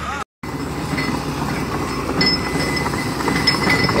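Hitachi EX200 excavator's diesel engine running with a steady mechanical clatter; a faint high whine joins about two seconds in.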